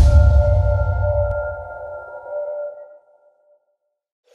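Logo sound effect: a hit at the start, then a ringing tone over a low rumble that fades away within about three seconds, leaving silence.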